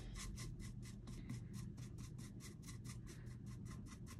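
Paintbrush bristles stroking paint onto a wooden pumpkin cutout: a faint, even run of short scratchy strokes, several a second.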